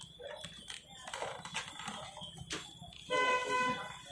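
A horn sounds one steady honk lasting just under a second, about three seconds in, over faint background activity with a few sharp clicks.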